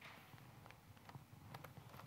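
Near silence: faint room tone with a few soft clicks from a laptop being operated.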